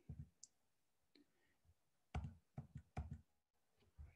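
Near silence broken by soft clicks at a computer as slides are advanced: one near the start, then a quick run of about six clicks between two and three seconds in.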